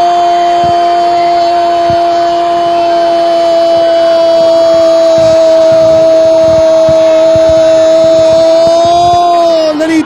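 A football commentator's long, held goal cry, "Gooool", sustained on one steady pitch for about ten seconds. It drops away just before the end, as he goes back into speech.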